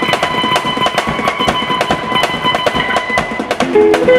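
Drum kit played in dense, rapid strokes with an electric guitar over it, some high notes held. Near the end the guitar comes forward with a run of distinct lower notes.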